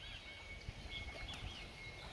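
Faint bird calls: a few short, rising-and-falling chirps over quiet outdoor background noise.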